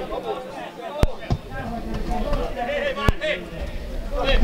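Distant shouts and chatter of players and spectators on an open football pitch, with two sharp thuds of a football being kicked, about a second in and again about three seconds in.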